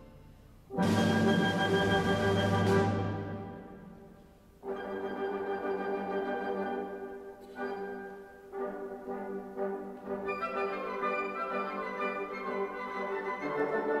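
Symphony orchestra playing classical music. A loud full chord comes about a second in and dies away over a few seconds. Quieter held chords and phrases follow and grow louder again near the end.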